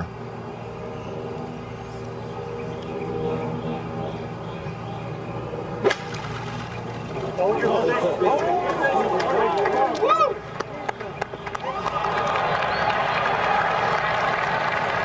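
A golf club strikes the ball off pine straw with one sharp crack about six seconds in. Spectators then shout at the ball in flight, and a steady applause rises near the end as it lands on the green.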